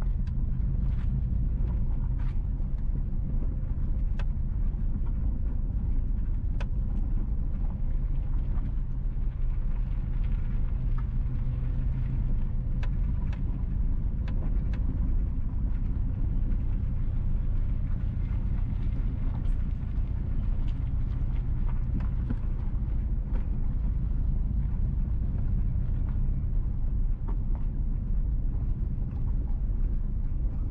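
A car driving slowly on an unpaved gravel road: a steady low rumble of engine and tyres, with scattered faint ticks and clicks.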